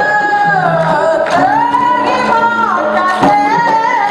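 A woman singing a solo dikir barat line into a microphone, holding long notes that slide between pitches, over accompaniment with a few sharp percussive strikes.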